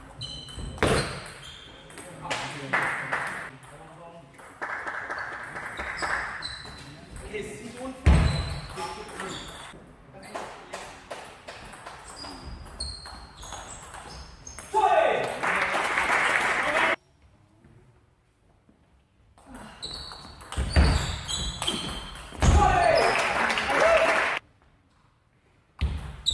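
Table tennis ball clicking off bats and the table during a rally. In the second half come two loud shouts, each about two seconds long, with brief near-quiet after each.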